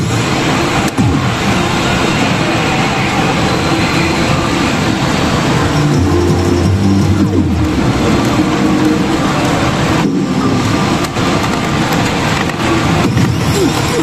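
Yajikita pachinko machine playing its rush-mode sound effects and music over the loud, steady din of a pachinko parlour.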